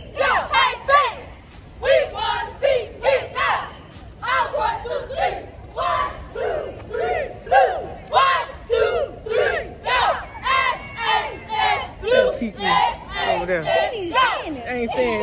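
A cheerleading squad chanting a cheer in unison: loud, rhythmic shouted syllables, about two a second, kept up throughout.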